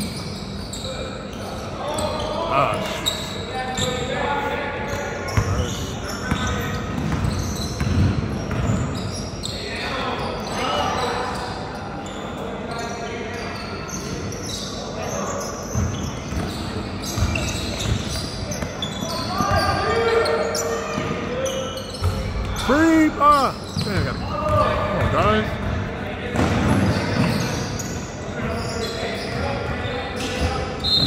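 Basketball bouncing on a hardwood gym floor during live play, with players' and spectators' voices in the gym throughout.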